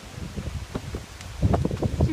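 Wind buffeting the microphone outdoors, an uneven low rumble with scattered low thumps that grows louder in the second half.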